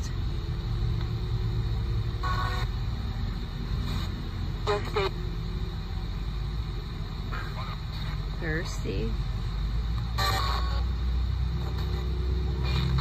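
RadioShack 12-587 radio sweeping through FM stations as a ghost box, giving hissing static broken every second or two by short clipped fragments of broadcast voices, over a steady low rumble.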